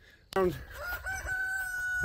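A rooster crowing: one long call that rises at its start, then holds a steady pitch for over a second.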